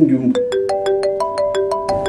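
Phone ringing with a melodic ringtone: a rapid run of chiming notes starting about a third of a second in, signalling an incoming call.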